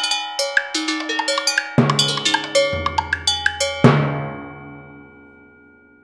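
Quick strokes on a set of tuned cowbells (almglocken), each ringing at its own pitch, with a deeper stroke about two seconds in. A last loud stroke near four seconds in rings on and dies away.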